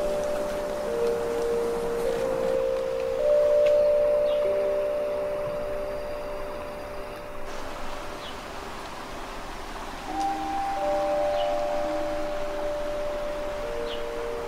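Slow background music of long held notes that come in one after another and overlap.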